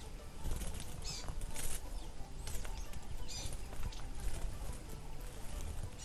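Soft outdoor ambience: a low steady rumble with a few short, high bird chirps scattered about once a second.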